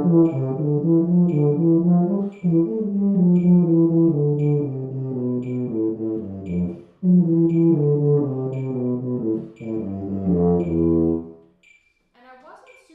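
Tuba playing a long sixteenth-note run at a slow practice tempo, about four notes to each tick of a metronome that clicks about once a second, each note kept full in tone. The run breaks briefly for breath about two, seven and nine and a half seconds in, and the playing stops near the end.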